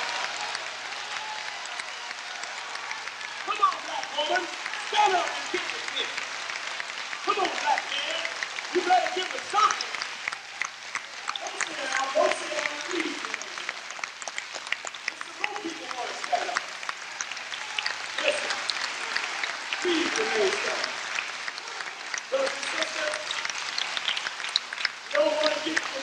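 Audience applauding steadily, with scattered voices calling out and talking within the crowd.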